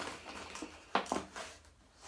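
A clear plastic pouch rustling and crinkling as it is handled and a sample packet is pulled out of it, with one brief sharp crackle about a second in.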